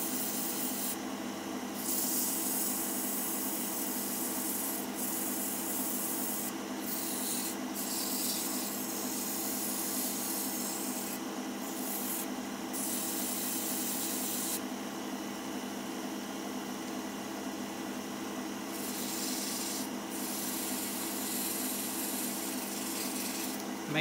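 Hand-held sandpaper rubbing a small maple turning on a wood lathe that runs at full speed, not slowed for sanding. A steady lathe motor hum runs under a high sanding hiss that breaks off briefly several times as the paper is lifted, and drops away for about four seconds past the middle.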